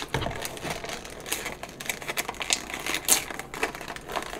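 The wrapper of a Care Bears surprise figure crinkling in irregular crackles as it is gripped and pulled at to tear it open; the wrapper is tough and hard to tear.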